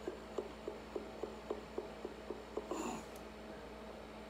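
Beer glass being swirled on a tabletop with a hand cupped over its mouth, giving faint, even ticks about four times a second. The ticks stop about two and a half seconds in, followed by a short sniff at the glass.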